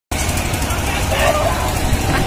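Fairground din: a steady, loud rumble from a swinging ride and its machinery, with crowd voices mixed into the noise and one voice rising out of it about a second in.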